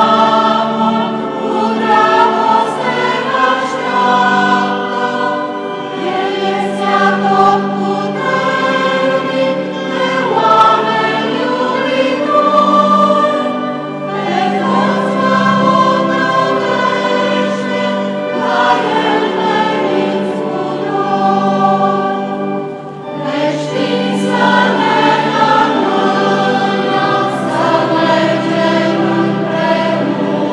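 A choir singing a liturgical hymn in long, sustained phrases, with a brief pause between phrases about 23 seconds in.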